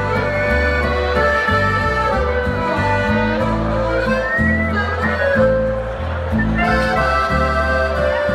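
A live folk band playing a Boarischer dance tune: accordion carrying the melody over guitar and a steady bass line.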